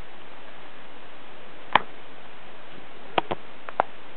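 Wood campfire crackling: a sharp pop a little under two seconds in and a quick cluster of pops near the end, over a steady hiss.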